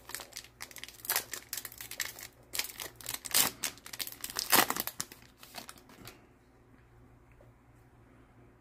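A 2021 Bowman baseball card pack's wrapper being torn open and crinkled by hand: a rapid run of crackles and rips that stops about six seconds in.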